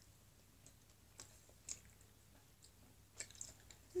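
Faint chewing of soft candy, with a few soft, wet mouth clicks scattered through.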